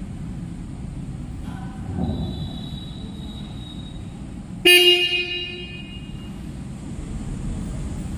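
Jawa 42 Bobber's single electric horn giving one short blast of about a second, a little past halfway in, over a steady low background hum.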